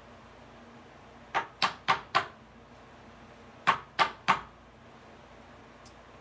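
Rigid plastic trading-card holder tapped sharply on a tabletop: a quick run of four taps, then a pause and three more, the card settling into the holder.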